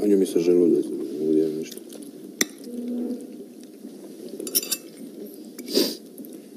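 Cutlery clinking and tapping on plates as people eat: a sharp clink about two and a half seconds in, a few quick clicks a couple of seconds later, and a louder clatter near the end.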